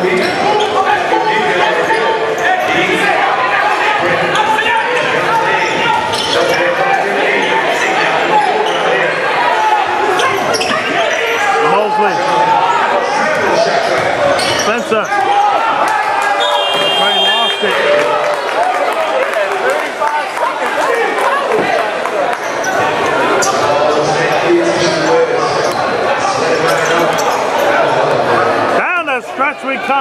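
A basketball dribbled on a hardwood gym floor amid steady crowd chatter, echoing in a large gymnasium. A short high-pitched tone sounds a little past halfway.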